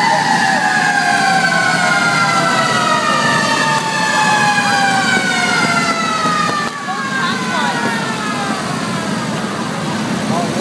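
A siren winding down, its pitch falling slowly and steadily for about eight seconds, over the low running of passing motorcycle engines.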